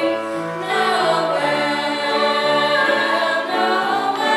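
A youth choir of children's and teenagers' voices singing a Christmas piece together, in held notes that move step by step from one pitch to the next.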